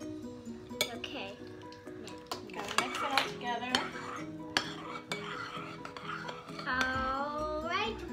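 A spoon clinking and scraping against a plate while stirring slime, in irregular knocks and scrapes, with background music.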